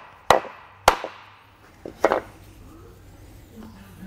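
Hammer striking a wooden block to drive a grease seal into the hub of a trailer disc-brake rotor: three sharp knocks within the first two seconds, the block spreading the blows so the seal goes in straight and seats flush.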